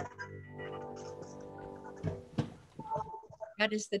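The last chord of a digital piano fading away after the accompaniment stops, with a single knock about two seconds in. A woman starts speaking near the end.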